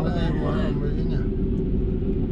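Steady low rumble and hum of a Mercedes-Benz car driving along a city street, heard from inside the cabin, with a voice talking briefly in the first second.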